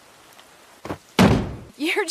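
A small knock, then a single heavy slam about a second in that dies away over half a second: a cartoon impact sound effect.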